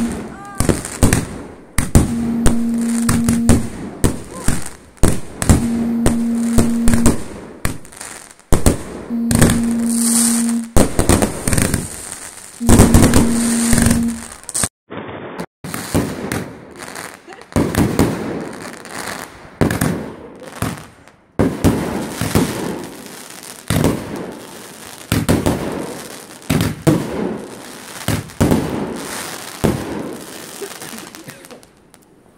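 Aerial fireworks going off in rapid succession: a dense run of sharp bangs and crackling bursts from multi-shot fireworks. Through the first half a low steady tone sounds five times, each for about a second and a half and evenly spaced. The sound drops out briefly about halfway.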